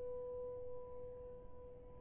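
A held piano note dying away: one steady tone with a fainter one an octave above, fading slowly.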